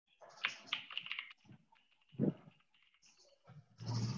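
Computer keyboard typing, a quick run of key clicks about half a second to a second in, followed by a short low sound about two seconds in and a longer, louder noisy sound starting near the end.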